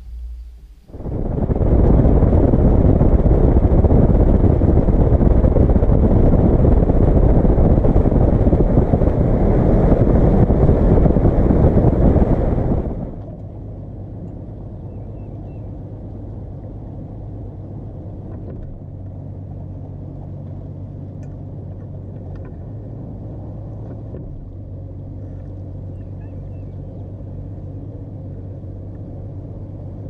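Evinrude 200 outboard-powered boat running at speed, a loud rush of engine, wind and water. About 13 seconds in it drops abruptly to the steady low hum of the outboard running at idle.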